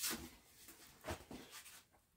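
A few soft footsteps of a person walking away, with a couple of light knocks, dying away near the end.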